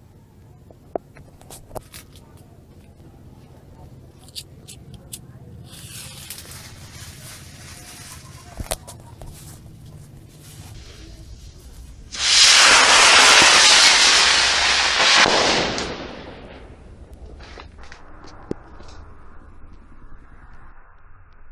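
Small amateur rocket motor (F10) firing on a test launch: a sudden loud rushing hiss starts about twelve seconds in, holds for about three and a half seconds, then fades out. Scattered sharp clicks and crackles come before it.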